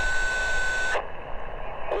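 Ham radio transceiver speaker: a steady single-pitch tone on the band for about the first second, then the receiver's static hiss until a voice begins to come through at the end.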